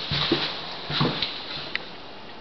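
A few irregularly spaced taps and knocks on a hardwood floor.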